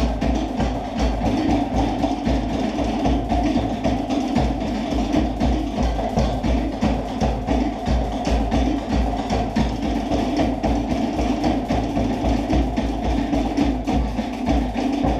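Tahitian-style drumming: wooden slit log drums knock out a fast, steady rhythm over deep drum beats, the music for an ōteʻa dance.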